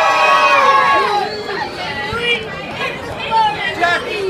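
A group of children cheering in one long, held shout that breaks off about a second in, followed by the crowd's chatter.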